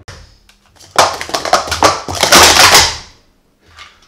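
Plastic sport-stacking cups clattering on a timing mat during a speed-stacking run: a rapid, dense string of loud clacks and knocks starting about a second in and lasting about two seconds, followed by one small knock near the end.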